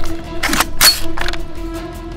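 A toy foam-dart blaster being handled: a sharp click, then two loud rasping mechanical strokes about half a second apart, like the blaster being primed back and forward. Background music plays underneath.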